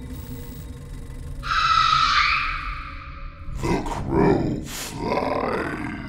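Horror intro sound design: a dark, low music drone under a long, harsh shriek starting about a second and a half in, then a cluster of shorter rough cries near the end.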